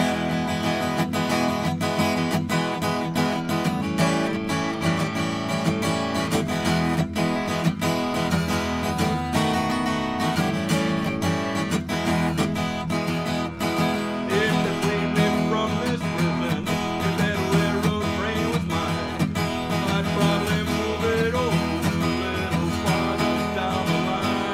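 Acoustic guitar strummed in a steady rhythm, playing chords.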